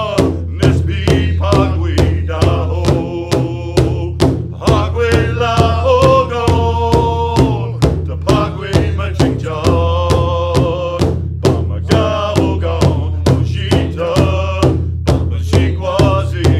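A powwow drum group performing a grand entry song: several voices singing together in unison over a large hand drum struck in a steady, even beat, a little under three strokes a second.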